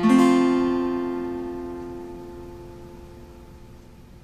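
An F major chord strummed once on an acoustic guitar and left to ring, fading away slowly.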